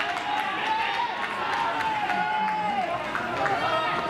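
Several voices calling out across a baseball field in long, drawn-out shouts, with a few short sharp clicks among them.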